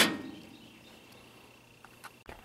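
A single sharp knock right at the start, dying away within a fraction of a second, followed by faint background quiet.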